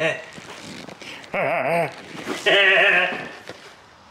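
A man laughing in two long, quavering bursts about a second apart.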